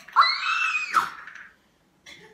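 A child's high-pitched squealed 'oh!', under a second long, rising and then falling in pitch.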